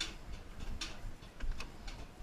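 Footsteps of people walking up the entrance steps of a pedestrian suspension bridge: a few scattered, irregular sharp clicks and taps.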